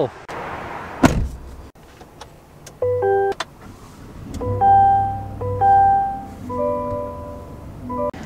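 GMC Sierra 1500 pickup being switched on: a rustle and a click, then from about three seconds in a series of short electronic chime tones at several pitches from the dashboard as the digital gauge cluster starts up, over a low hum.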